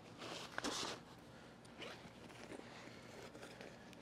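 Zipper on a nylon camera bag pulled in two short strokes in the first second, followed by quieter rustling of the bag's fabric as it is handled.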